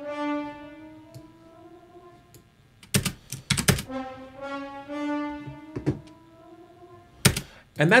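Sampled orchestral horn section (Steinberg Iconica horns) playing a slow rising chromatic line from middle C, heard twice, as the MIDI notes play back. Loud short clicks come about three seconds in and again near the end.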